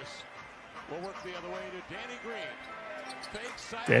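NBA game broadcast audio playing quietly: a commentator's voice over arena noise, with a basketball being dribbled on the hardwood court.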